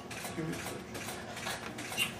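A rapid, even series of faint mechanical clicks, about four a second, with a low voice murmuring briefly underneath.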